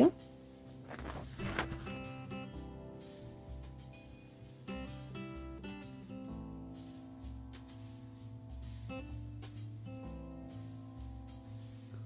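Soft background music with a plucked guitar.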